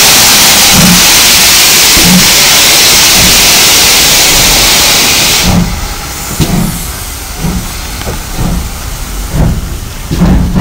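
GWR City class 4-4-0 steam locomotive No. 3717 City of Truro moving off slowly: a loud steam hiss with slow exhaust beats about once a second. The hiss drops away about five and a half seconds in as the engine passes and its tender draws by, while the beats carry on.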